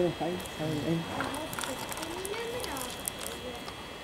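Voices talking in the background, with scattered light clicks and rattles of stones as an RC model O&K excavator scoops up a bucket of soil and rubble.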